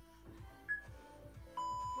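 Gym interval timer beeping the end of a work interval: a short high countdown beep about a second in, then a longer, lower beep near the end. Background music with a steady beat plays underneath.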